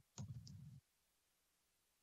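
A short burst of sharp clicks over a low muffled rumble, lasting about half a second near the start, then near silence.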